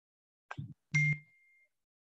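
A short knock, then a louder one about a second in that carries a single high ding ringing on for about half a second.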